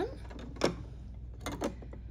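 Metal needle plate of a Singer Quantum Stylist 9960 sewing machine being set back onto the machine bed over the bobbin: a few light metal clicks and taps. The loudest comes about two-thirds of a second in, and a small cluster follows near the end.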